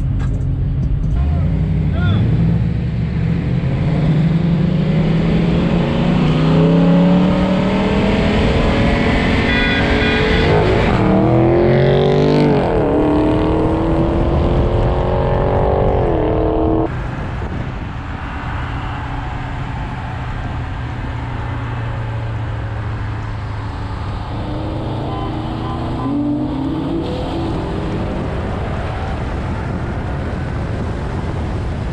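Car engine accelerating hard under wind and road noise, its pitch climbing for about ten seconds, then dropping and climbing again twice as it shifts up. It cuts off suddenly about two-thirds of the way in to a quieter, steadier cruising note that rises again near the end.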